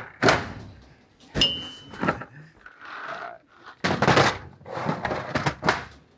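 Plastic Milwaukee Packout tool cases being handled on a shelf: a string of hollow knocks and clunks, with one short metallic clink about a second and a half in and a rattling cluster around four seconds in.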